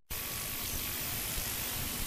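A moment of dead silence, then a steady, faint hiss of outdoor background ambience with no distinct event in it.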